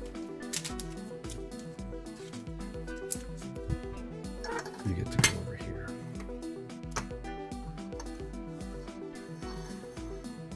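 Steady background music, with a few light clicks and taps from cards in plastic sleeves being handled and set on a display stand, the sharpest about five seconds in.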